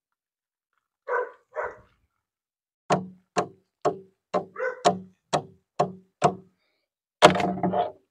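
A dog barking repeatedly: a run of about eight short barks, roughly two a second, followed near the end by a louder, longer burst of sound.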